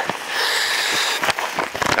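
Crackling, crunching noise of movement in snow, with a longer rustle in the first half and a few sharp crackles.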